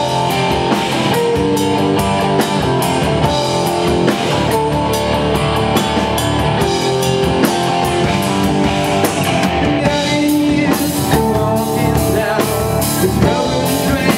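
A rock band playing live, with electric guitars over a steady drum-kit beat. The cymbals grow fuller and brighter about eleven seconds in.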